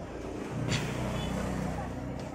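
A motor vehicle's engine: a low steady hum that grows louder about half a second in, with a single sharp click shortly after.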